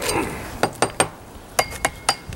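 Metal parts of a cheap 6-in-1 camp tool clinking against each other as they are handled: six light clinks with a short metallic ring, in two groups of three about a second apart.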